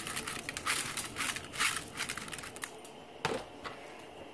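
Two pounds of rinsed rice being poured from a plastic bag into a pot of boiling broth: a dense rush of small clicks and rustling for about two and a half seconds, then it quiets, with a single knock a little after three seconds.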